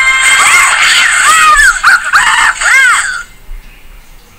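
High-pitched cartoon screams and squeals, several rising and falling cries in a row over music, played from a television across the room; the sound drops away suddenly about three seconds in.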